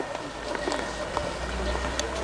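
Quiet background chatter of a group of people, with footsteps shuffling on a dirt path and a low steady rumble on the microphone.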